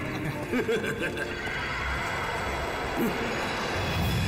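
Horses being ridden: a horse whinnies briefly about half a second in, over a steady low background.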